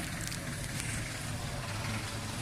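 A motor vehicle's engine running steadily with outdoor street noise.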